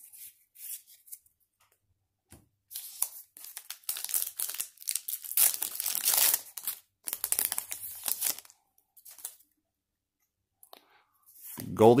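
A baseball card pack wrapper being torn open and crinkled by hand, in ragged bursts of ripping for about six seconds starting around three seconds in.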